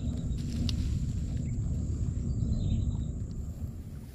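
Low, rough rumbling noise on an outdoor microphone, with a faint steady high-pitched whine above it that stops about three seconds in.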